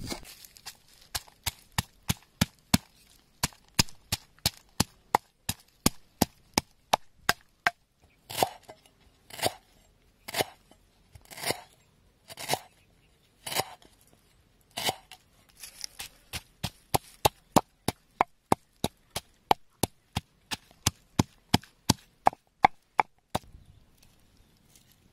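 A cleaver chopping on a wooden board, then a wooden pestle pounding chilies, garlic and lemongrass into a paste in a stone mortar. It is a long run of sharp knocks, two or three a second, with slower, heavier strokes about once a second in the middle.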